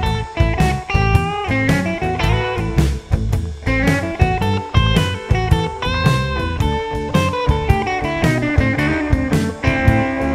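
Electric guitar, a Telecaster-style solid-body, playing blues lead lines of quick picked notes and string bends over a blues backing track with bass and drums.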